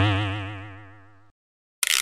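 Cartoon 'boing' comedy sound effect: a springy, wobbling tone that fades away over about a second and a half. Near the end, a short burst of noise comes in where the picture cuts.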